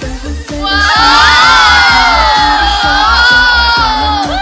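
Pop dance music with a steady thumping beat. Over it, a group of young women's voices let out one long, loud shout together from about half a second in, dropping slightly in pitch toward the end.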